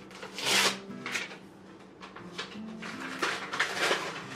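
Paper rustling and crinkling in several short bursts as a letter and envelope are handled, with soft background music underneath.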